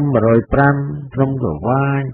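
A man's voice narrating continuously in a flat, nearly unchanging pitch.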